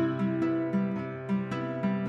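Background music with a string of plucked notes.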